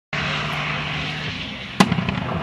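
Hill-climb race car engine idling with a steady low hum, then one sharp exhaust backfire bang near the end.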